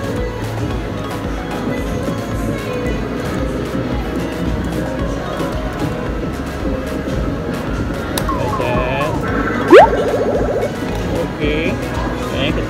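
Steady arcade din: electronic music and jingles from the claw machines. Near the end comes a short run of warbling tones, then one loud, quick upward-sweeping electronic sound effect.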